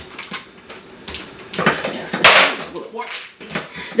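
Metal tortilla press clanking and clicking as its lever is worked and the press is opened, squashing a ground-beef patty between parchment sheets. There is a run of sharp knocks and one louder, brief rustling burst a little over two seconds in.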